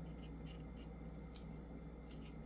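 Faint rubbing and small ticks of fingers sliding and handling tarot cards on a tabletop, over a steady low hum.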